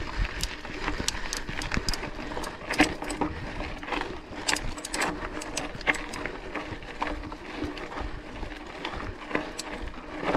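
Mountain bike climbing a loose gravel and dirt track: the Fast Trak tyres crunch over stones while the bike gives off a constant run of irregular clicks and rattles.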